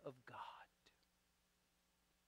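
A man's soft spoken words trail off in the first half-second, then near silence: room tone with a faint steady hum.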